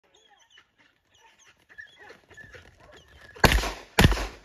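Two shotgun shots, the first about three and a half seconds in and the second right at the end, each a loud crack with a short ringing tail. Before them, faint scattered animal calls.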